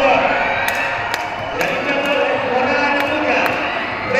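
A man's voice commentating on the race, with a few sharp clicks over it.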